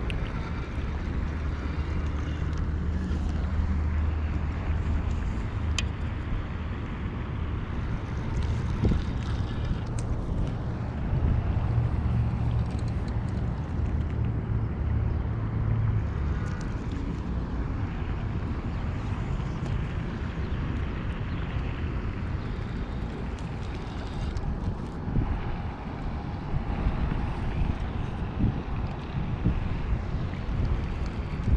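Low, uneven rumble of wind buffeting the microphone, with a few faint clicks from handling the fish and tackle.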